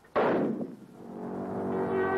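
A single loud rifle shot a fraction of a second in, dying away over about half a second: an accidental discharge during horseplay with a rifle that had not been cleared. A held, bell-like music chord then swells up and sustains.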